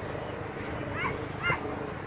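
Two short, sharp pitched calls about half a second apart, the second one louder, over steady outdoor background noise.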